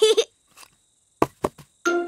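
A few short, sharp cartoon knocks about a second and a quarter in: two of them a quarter of a second apart, then a fainter third.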